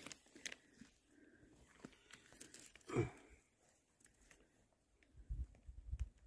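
Faint scratching and rustling of a gloved hand digging through forest-floor duff and soil under a log, with small clicks and snaps of twigs, working down toward a deeply buried matsutake mushroom. A brief louder sound comes about halfway through, and low thumps near the end.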